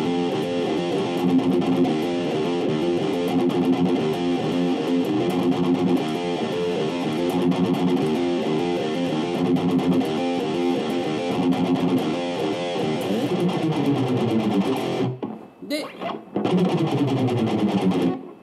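Electric guitar played through a distorted amp tone: fast, half-muted (palm-muted) chugging that alternates the open low sixth string with its 2nd fret. After about 13 seconds it turns to slides along the low string, with a short break about 15 seconds in and a slide down near the end.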